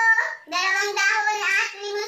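A high female voice singing or chanting in drawn-out held notes, with a short break about half a second in.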